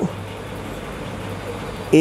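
Steady background noise: an even hiss over a low, constant hum, with no distinct events.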